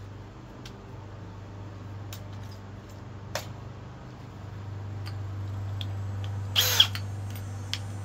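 A drill bit being swapped by hand between two cordless drills: a few light clicks of bit and chuck, then a short, louder rasp near the end as the bit goes into the next chuck. A steady low hum runs underneath.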